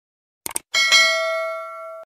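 Two quick clicks, then a bell-chime sound effect that rings, is struck again a moment later, and slowly fades: the notification-bell ding of a subscribe-button animation.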